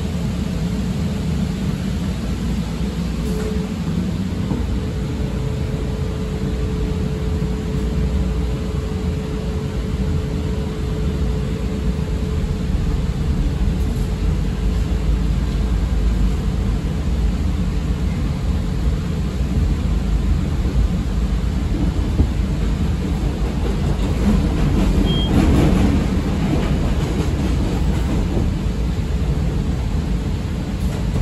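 Interior of a CTA 5000-series rapid-transit car in motion: a steady rumble of wheels on rail and car body noise. A held tone sounds for several seconds early on, and the noise swells louder about 25 seconds in.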